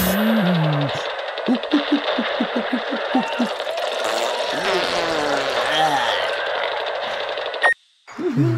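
Cartoon characters' wordless voices: sliding murmurs and a quick run of short rising squeaks, about five a second, over a steady hiss. All of it cuts off abruptly just before the end.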